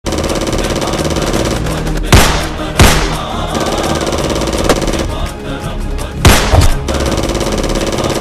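Background music with gunshot sound effects cut over it: a few sharp single shots, the loudest about two seconds in, just under three seconds in and about six seconds in, with a couple of fainter ones between.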